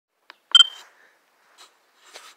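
A phone camera's short electronic start-recording beep about half a second in, just after a faint tap. Faint handling rustle follows.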